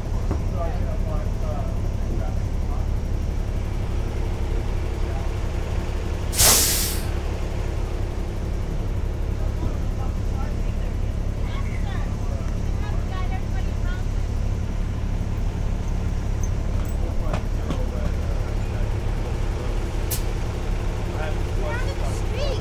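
Transit bus with its engine running, a steady low rumble, and one loud burst of air-brake hiss about six seconds in. The bus is stuck in snow at the curb.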